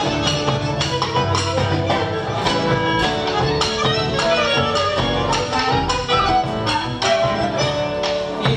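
A live band playing Argentine popular music: bandoneon, piano, guitar, double bass and drums with percussion, keeping a steady beat.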